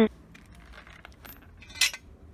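Stainless-steel motorcycle exhaust parts being handled: faint small ticks, then one light, bright metal clink with a short ring near the end.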